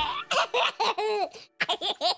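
Childlike cartoon voices laughing in a run of short bursts, each rising and falling in pitch, with the backing music stopped.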